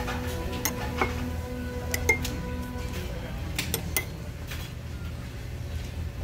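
Metal spoon clinking against a ceramic soup cup while scooping up avgolemono soup, about eight light clinks in the first four seconds. A steady low hum runs underneath.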